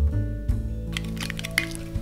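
Light acoustic background music plays throughout. From about a second in, a spoon clicks and scrapes quickly against a glass bowl as a thick soy-and-garlic sauce is stirred.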